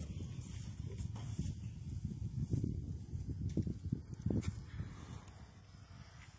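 Footsteps and phone handling: irregular low thuds as the camera moves, fading toward the end.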